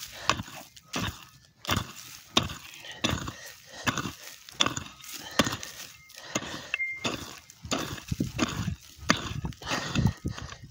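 Small hand pick chopping and scraping into dry, clumpy soil: a run of separate strikes, a little under two a second.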